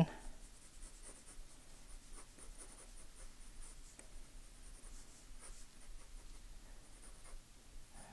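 Graphite pencil scratching on drawing paper in quick, irregular sketching strokes, faint.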